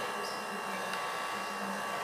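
Steady room tone: an even hiss with a faint low hum, like a fan running in a small room.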